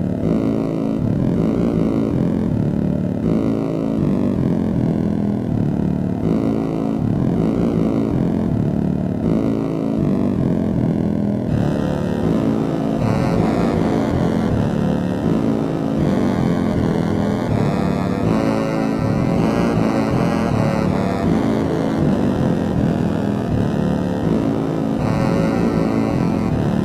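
Dungeon synth music: layered synthesizers playing a dense, steady passage over a low, buzzing drone.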